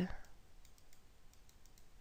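A few faint, short clicks of a computer mouse over quiet room tone.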